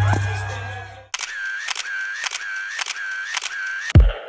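Bass-heavy party music cuts off about a second in. A camera-shutter sound effect follows, clicking repeatedly at about three clicks a second with a whirring tone between the clicks.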